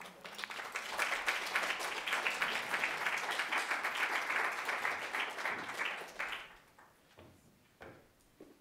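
Audience applauding, swelling within the first second and dying away about six seconds in.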